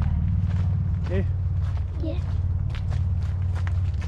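Footsteps crunching on a gravel track strewn with leaf litter, under a steady low rumble on the microphone, with a couple of short spoken words.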